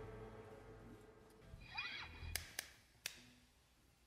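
A live rock band's final chord dying away, followed about a second and a half in by a brief rising squeal and then three sharp clicks.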